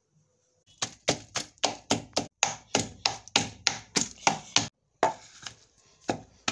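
A pestle pounding boiled palm fruits in a mortar to mash out the pulp and oil for banga: a steady run of sharp thuds, about three to four a second, starting about a second in, with a brief pause near the end.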